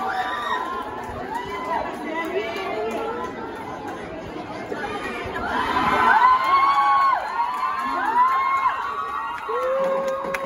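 Crowd of spectators cheering and shouting, many voices calling out at once, growing louder about halfway through.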